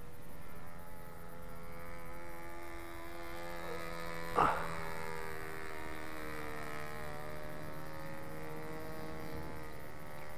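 Radio-controlled scale Gypsy Moth model's motor droning high overhead: a steady hum whose pitch wavers slightly up and down.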